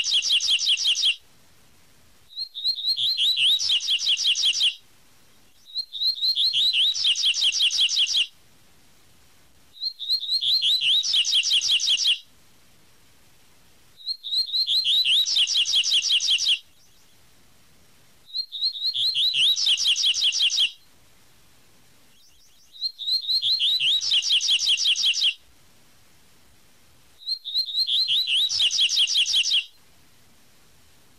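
Double-collared seedeater (coleiro) singing its 'tui-tui' song: a high opening note and then a fast run of repeated whistled notes lasting two to three seconds. The same phrase comes back about every four seconds.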